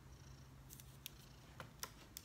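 A cat purring faintly, a low steady rumble, with a few light clicks in the second half.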